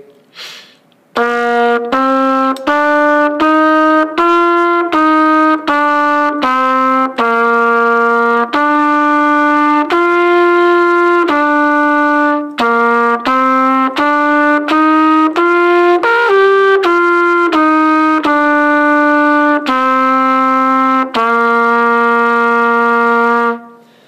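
Solo trumpet playing a simple exercise melody with separately tongued notes in a narrow range. It begins about a second in, with notes mostly half a second to a second long, and ends on a long held note at the starting pitch.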